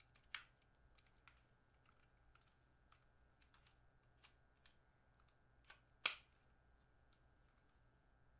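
Scattered small clicks and taps of a plastic camera field monitor being handled, with two sharper, louder clicks, one about a third of a second in and the loudest about six seconds in.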